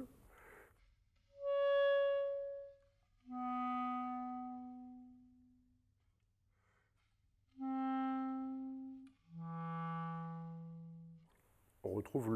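Buffet Crampon RC Prestige clarinet playing four separate held notes, each fading away before the next. The first note is the highest and the last the lowest. These are alternate fingerings used to correct intonation, such as flattening notes that would otherwise be sharp.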